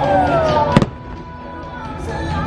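Fireworks show: one loud firework bang a little under a second in, over the show's music with a falling melody line; after the bang the music carries on more quietly.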